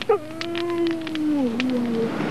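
A dog howling: one long held note that steps down in pitch near the end, with a few faint clicks around it.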